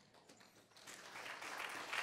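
Audience applauding, starting faintly under a second in and growing louder.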